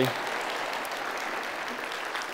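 Congregation applauding, a steady even patter of many hands clapping.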